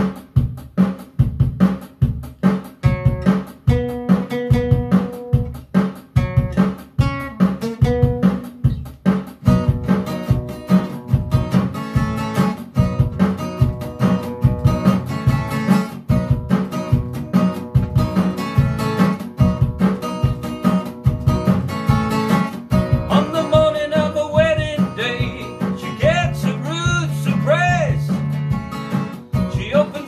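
Acoustic guitar played in a steady, driving rhythm, with sharp regular strokes about twice a second. Near the end a voice comes in over it.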